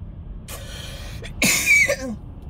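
A woman coughing into her fist: a softer, breathy cough about half a second in, then one loud, harsh cough near the end, over the low running noise of the car cabin.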